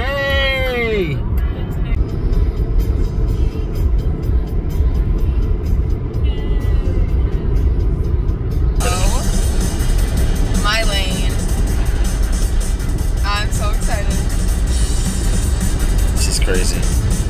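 Steady low road rumble inside a car driving on a highway, with music and a few short voices over it.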